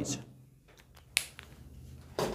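A single sharp click about a second in, followed by a fainter click, against a quiet room.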